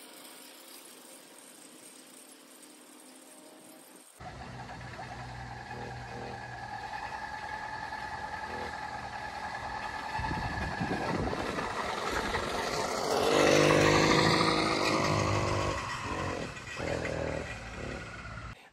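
Motorized bicycle's small petrol engine sputtering and firing briefly on starting fluid as the bike coasts downhill, building to its loudest about two-thirds of the way through. The first few seconds hold only a faint background.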